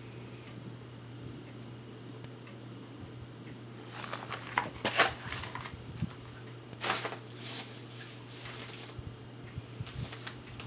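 Rustling and light knocks of books and papers being handled, in two spells about four and seven seconds in, the loudest near five seconds, over a steady low hum.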